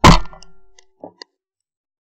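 A single 12-bore shot from a Beretta 682 Gold E over-and-under shotgun, recorded from the gun itself: very loud and sharp, fading over about half a second. Two faint clicks follow about a second later.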